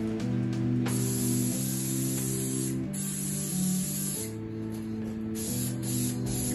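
Aerosol spray paint can hissing as paint is sprayed onto a bicycle frame: one long spray starting about a second in, then several short bursts. Background music with sustained chords plays underneath.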